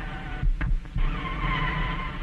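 Old cartoon soundtrack with a heavy steady hum and hiss. About half a second in there are two sudden thumps with brief dropouts, then a wavering high pitched tone.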